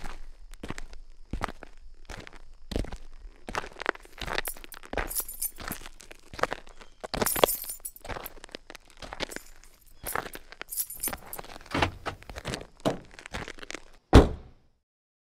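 Irregular sharp clicks, knocks and clinks, several a second with no steady rhythm, some bright and glassy.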